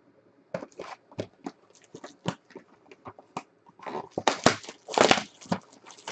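Cardboard trading card hobby boxes and their plastic wrapping being handled: a string of sharp crinkles and light knocks, densest and loudest about four to five and a half seconds in.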